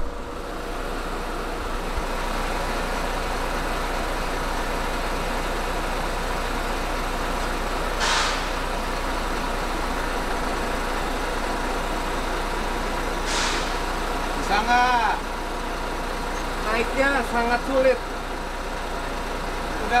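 Pindad Anoa armoured personnel carrier's diesel engine idling steadily, a low even hum. Two short hisses of air cut in, about 8 and 13 seconds in, typical of the vehicle's air-operated brake system.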